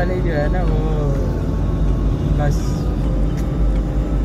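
Steady low rumble of a car driving, heard from inside the cabin, with a brief hiss about two and a half seconds in.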